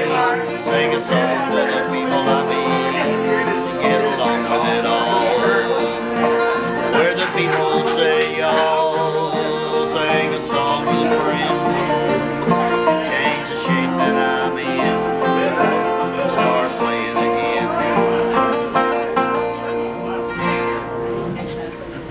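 Acoustic guitar, banjo and neck-rack harmonica playing an instrumental country/bluegrass break together.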